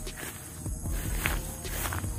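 Footsteps walking through long grass and weeds, a few irregular steps with the rustle of stalks brushing past.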